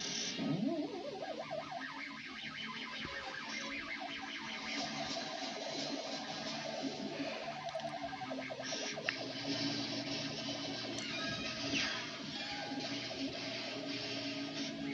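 Orchestral cartoon score with sound effects playing from a television, picked up through the room. A short sliding swoop comes in the first second, and brief crash-like hits come at the start and about nine seconds in.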